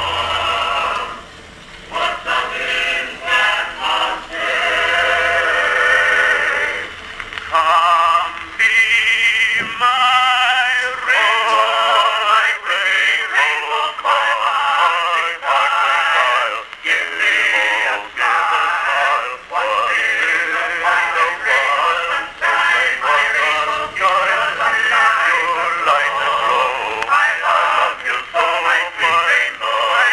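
Edison Triumph Model B cylinder phonograph with a Model C two-minute reproducer, playing a 1902 two-minute cylinder through its oak cygnet horn. A male vocal quartet sings a medley of songs in the thin, bass-less tone of an acoustic recording.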